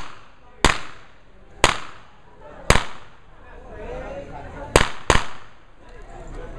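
Pistol shots on a practical shooting stage: three shots about a second apart, a pause of about two seconds, then a quick pair of shots near the end, each crack ringing briefly.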